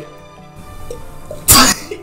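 A man drinking beer from a bottle chokes on it and splutters it out in one sudden, loud sneeze-like cough about one and a half seconds in: the beer has gone down the wrong way.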